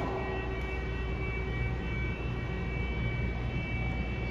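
An alarm sounding continuously as several steady, unchanging high tones over a low hum.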